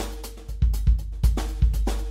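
Drum machine pattern from the Soft Drummer app playing back: deep kicks with long booming tails, snare and hi-hat or cymbal hits in a steady beat.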